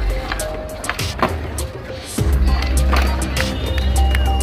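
Skateboard wheels rolling on smooth concrete, with sharp clacks of the board scattered through, the loudest about a second in. Music with a heavy bass line plays throughout.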